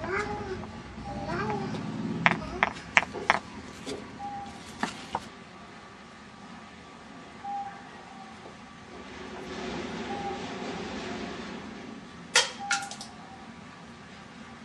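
A cat meowing several times, with a quick run of sharp taps about two to three seconds in and a few more near the end.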